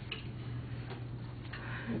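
Quiet classroom room tone: a steady low hum with a few faint, irregular clicks and taps.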